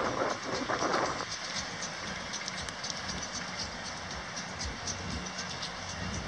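Steady outdoor background noise, a low rumble with hiss, louder for about the first second and then even.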